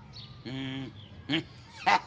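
Short honking voice sounds from the Sesame Street puppet Herry Monster: one held honk about half a second in, then three short, sharp sounds near the end.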